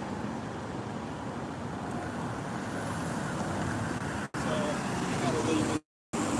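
Steady road-traffic noise from a city street, with faint voices in the second half. The sound drops out for an instant about four seconds in and again just before the end.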